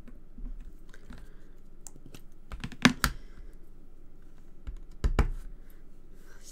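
Small sharp plastic clicks and taps as a Memento ink pad's lid comes off and a clear acrylic stamp block is inked on the pad and set down on the card. The loudest double knocks come about three seconds in and again about five seconds in.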